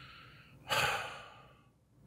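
A person sighing out into a close microphone: one breathy exhale about a second long that fades away, after a fainter breath.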